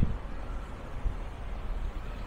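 Outdoor street ambience: a steady low rumble of wind on the microphone and light car traffic.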